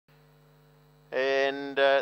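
Faint steady electrical hum, then about a second in a loud steady pitched tone that holds one note, dips briefly once and returns.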